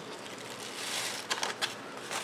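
A sheet of paper rustling and crinkling as it is folded into a chute and tipped, pouring small dry marshmallow seeds into a half envelope. There is a soft hiss that swells about a second in, with a few light clicks.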